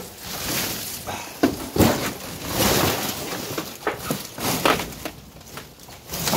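Rustling and crunching of trash and cardboard underfoot, with several sharp knocks and thumps, as someone climbs into a dumpster and steps across the debris.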